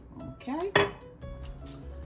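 A single sharp clink of kitchenware just before a second in, as a measuring spoon of vanilla and its glass bottle are handled over a stainless steel pot.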